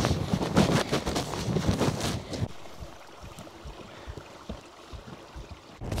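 Wind buffeting the microphone outdoors, heavy and gusty for the first two and a half seconds, then dropping to a much lighter rumble.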